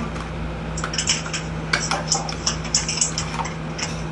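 Packaging being handled: a small box and its contents taken out and turned over, giving a scatter of short crinkly clicks and rustles. A steady low hum runs underneath.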